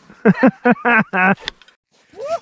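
People's voices in short bursts of talk or laughter for about a second and a half, then cut off abruptly into near silence.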